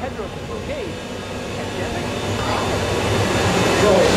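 A rumbling, hissing sound-effect riser that swells steadily louder and brighter, building toward a cut.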